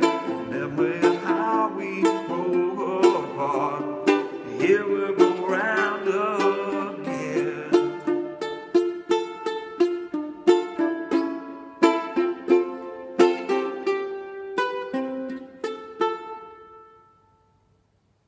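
Kala concert ukulele being strummed, with a man's voice singing over the chords for the first seven seconds or so. The chords then go on alone in steady strums, and the song ends on a final chord about sixteen seconds in that rings out and fades away.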